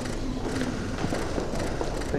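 Room ambience at a handshake photo opportunity: a steady hiss of noise with faint low murmur and scattered light clicks.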